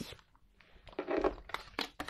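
Tarot cards handled on a wooden tabletop: quiet at first, then soft sliding and scraping of card stock from about half a second in, with a few light clicks near the end as a card is picked up.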